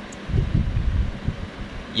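Low, uneven background rumble with irregular swells, in a short pause between spoken words.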